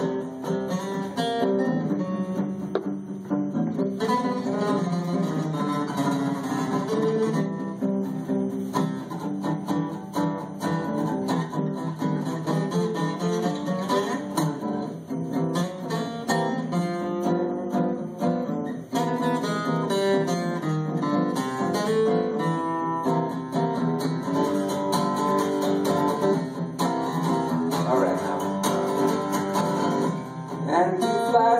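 Two acoustic guitars playing together live: an instrumental passage of picked notes and chords between sung verses.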